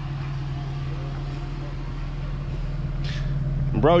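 Supercharged 3800 V6 of a Chevrolet Monte Carlo SS idling steadily, a low even hum.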